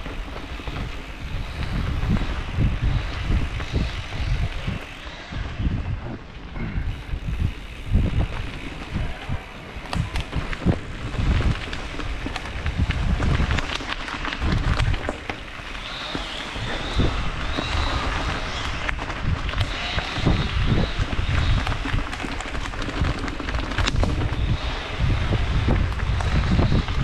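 Mountain bike descending a forest singletrack, heard from a helmet-mounted camera: wind buffeting the microphone in uneven gusts over the rolling of tyres on gravel and dirt, with frequent sharp knocks and rattles from the bike over bumps.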